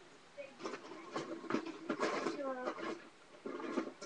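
An indistinct voice, not close to the microphone, mixed with a few sharp clicks and clatters like small plastic building pieces being sorted through.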